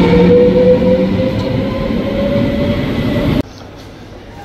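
NS double-decker electric train running at the platform: a loud rumble with a whine that rises slowly in pitch as it picks up speed. It cuts off abruptly about three and a half seconds in, leaving a much quieter background.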